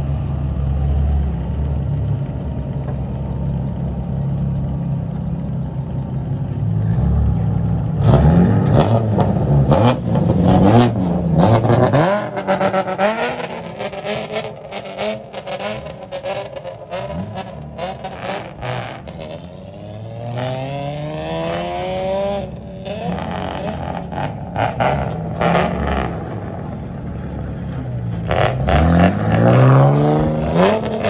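Engines of lowered old Toyota-style kaido racer sedans: a steady idle, then, from about eight seconds in, repeated revving that rises and falls in pitch, with sharp cracks, louder again near the end as the cars pull away.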